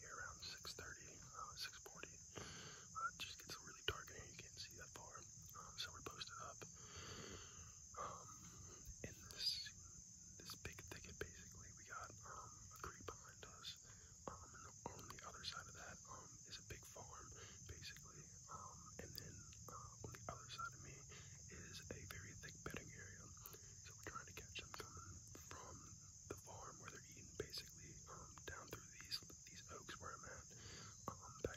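A man whispering close to the microphone in short, hushed phrases, with small clicks throughout. A steady high-pitched tone runs underneath.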